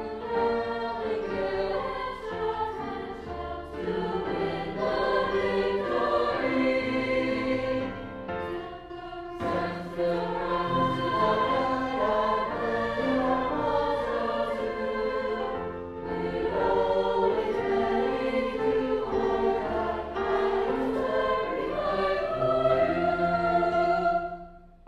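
High school choir singing part of a medley of U.S. armed forces service songs, with brief lulls about nine and a half and sixteen seconds in.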